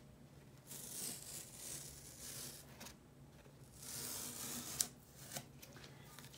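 White artist's tape being peeled off the edge of heavy cotton watercolour paper: two faint, drawn-out ripping peels, then a sharp tick near the end.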